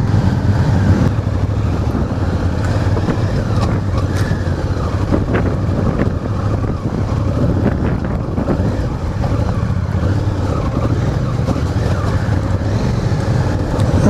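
Honda Africa Twin's parallel-twin engine running steadily as the bike is ridden off-road, with wind noise on the microphone.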